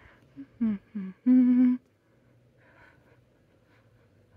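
A voice humming: a few short notes, then one steady held note, stopping just under two seconds in.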